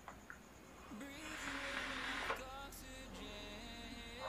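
A vaper's draw through a dripping atomizer (Drop RDA on an Asmodus Lustro mod, 0.15 ohm Alien coil): a quiet hiss of air and coil sizzle lasting about a second and a half, starting about a second in. Faint music plays underneath.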